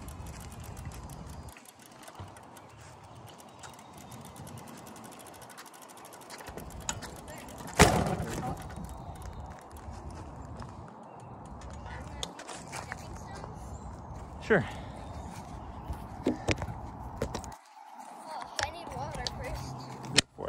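Wind rumbling on the microphone of a camera carried on a moving bicycle, with small rattles of the bike. A single sharp knock about eight seconds in is the loudest sound, and smaller clicks follow.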